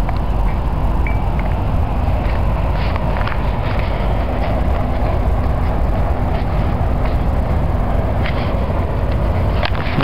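Steady, loud outdoor rumble and hiss with no speech, of the kind traffic and wind on a handheld camera's microphone make, with a brief high chirp about a second in.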